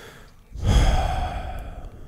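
A man sighs once into a close microphone: a long breath out that starts about half a second in and fades away toward the end.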